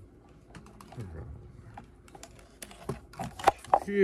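Small clicks and taps of objects being handled on a tabletop, with a few louder sharp knocks near the end.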